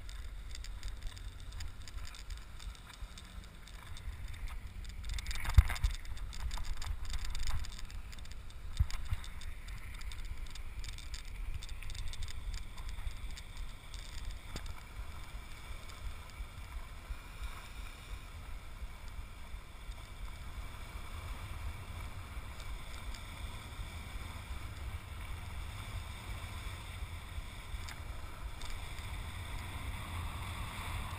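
A boat underway at sea, heard from a camera on its bow pulpit: a steady low rumble of wind on the microphone and water. A sharp knock about five seconds in is the loudest sound, with a smaller one about nine seconds in.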